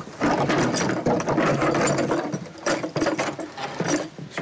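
Old wooden plank door, locked, being shoved and wrenched open: a dense run of rattling, knocking and creaking wood.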